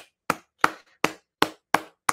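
Slow, evenly spaced hand claps, about six sharp claps at two to three a second: ironic applause.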